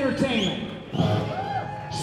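Live rock band playing a song, with a singer's voice over electric guitar.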